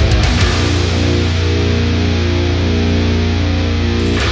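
Jackson RRX24 MG7 seven-string electric guitar played with heavy metal distortion. A few quick palm-muted low strokes open it, then a low chord is struck about half a second in and held ringing.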